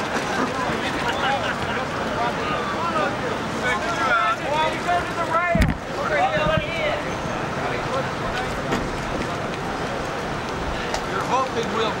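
Men's voices talking indistinctly over steady outdoor noise from wind and water, with a brief low thump about halfway through.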